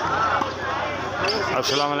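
A volleyball being struck during a rally, heard over steady crowd voices; near the end a man's voice begins a greeting.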